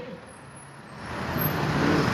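Road traffic: a passing vehicle whose noise swells steadily through the second second.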